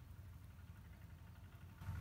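Near silence: only a faint, steady low background rumble, with no distinct sound.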